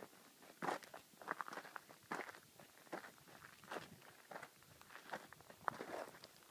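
Footsteps on loose gravel and rock at an even walking pace, about one step every 0.7 seconds.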